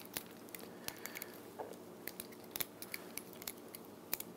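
Faint, irregular small clicks and ticks of thin elastic thread being wound tightly around a fishing plug by hand.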